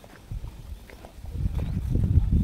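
Footsteps on a rocky path of stone steps through dry grass, a few separate knocks early on, then a low rumble on the microphone that grows louder in the second half.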